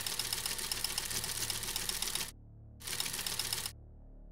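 Typewriter keys clacking in a rapid run, a short pause past the middle, then a shorter run that stops near the end.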